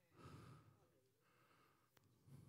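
Near silence, broken by one faint breath heard through the microphone about a quarter second in, and a tiny click near the end.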